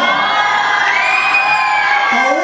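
Audience of fans cheering and screaming, with many high-pitched voices held together.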